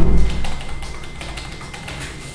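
A dull thump on the table close to the tabletop microphone, the loudest sound, then scattered light clicks and taps through a pause in speech.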